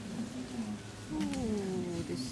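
A single drawn-out animal call that falls steadily in pitch for nearly a second, starting just past the middle, over a steady low hum.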